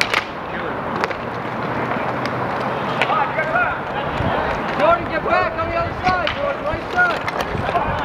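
Roller hockey play: a sharp stick clack at the faceoff, then inline skate wheels rolling on the court under players' shouts and calls from about three seconds in.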